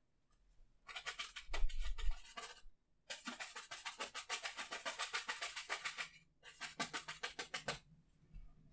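A paint brush being beaten against the easel leg in three runs of rapid knocks, several a second, with short pauses between the runs. This is the wet-on-wet way of knocking the thinner out of a freshly washed brush.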